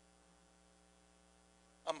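Faint steady electrical hum made of several even tones. A man's voice starts speaking just before the end.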